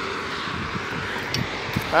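Steady rush of road traffic, with a motor scooter passing close by.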